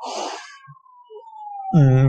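A man's short cough into his hand, a brief breathy burst. Behind it a faint thin tone slides slowly down in pitch.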